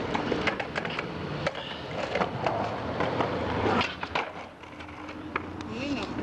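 Skateboard wheels rolling over rough asphalt, with scattered clacks and knocks of the board. The rolling noise drops off about four seconds in, then picks up again.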